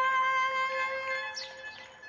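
Saxophone holding one long, steady note that fades away in the last half second, ending a phrase.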